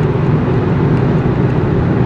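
Steady road and engine rumble heard from inside the cabin of a moving car.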